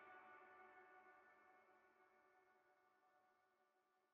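Faint closing theme music: a held chord fading out steadily into near silence.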